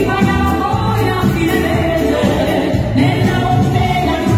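Live Italian liscio dance band playing, with a woman singing into a hand-held microphone over it and a steady bass line underneath.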